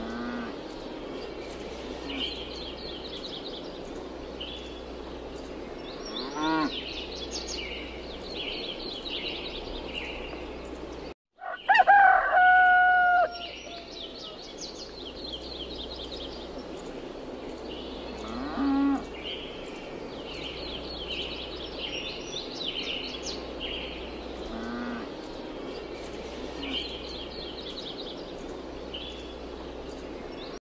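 Farmyard ambience: small birds chirping over and over, with a rooster crowing loudly for about a second and a half near the middle, after a brief dropout. A few shorter, lower animal calls come and go, over a low steady hum.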